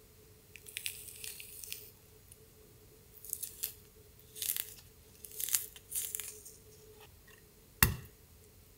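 Juicy orange slices being pulled apart into segments by hand, the flesh and membranes tearing wetly in a series of short bursts. Just before the end comes one sharp knock, the loudest sound, and a faint steady hum runs underneath.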